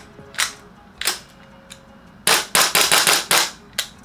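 Gas blowback airsoft rifle (EMG/CYMA Noveske N4 CGS, M4-type) firing, its bolt slamming back and forth on gas: two single sharp reports, then a rapid string of about six shots about halfway through, and one last shot near the end.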